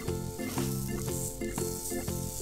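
Background music with a melody of short notes, over a steady hissing rustle of coloured sand being spread and scraped across a sand-art sheet with a small spoon.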